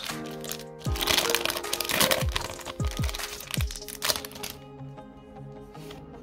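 Foil booster pack wrapper crinkling and crackling as it is torn open by hand; the crinkling stops a little over four seconds in. Background music with a deep, thudding beat plays throughout.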